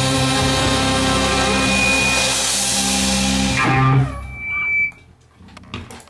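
A jazz-rock ensemble with electric guitar holds a loud sustained chord that cuts off about four seconds in, ending the piece. A brief high tone and faint ringing follow.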